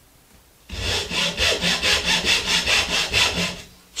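Hand backsaw cutting into a wooden board: a quick, even run of saw strokes that starts under a second in and stops just before the end.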